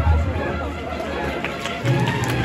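Crowd chatter over low sustained notes from a cornet-and-drum processional band, with clapping starting near the end.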